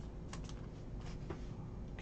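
Faint, scattered light clicks and rustles of trading cards and clear plastic sleeves being handled.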